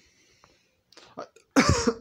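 A person coughs once, a short harsh cough near the end, after about a second of quiet.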